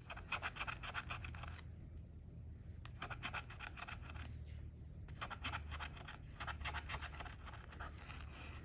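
The edge of a metal bottle opener scraping the latex coating off a scratch-off lottery ticket, in runs of quick strokes broken by a couple of short pauses.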